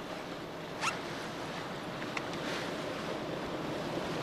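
Steady wind and sea noise on an open ship's deck, with a brief rustle about a second in and a faint click a little after two seconds.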